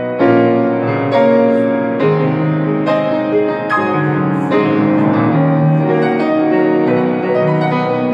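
Grand piano being played with both hands: full chords struck about once a second, each ringing on under the next.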